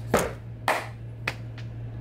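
Three short, sharp hand sounds, like claps or slaps, about half a second apart, the middle one the loudest, over a steady low electrical hum.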